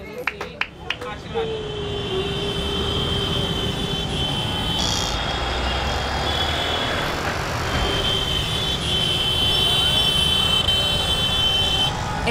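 Busy city-street traffic: the running of auto-rickshaws, motorbikes and cars at an intersection, with voices in the crowd and a thin steady high tone over most of it that breaks off briefly in the middle.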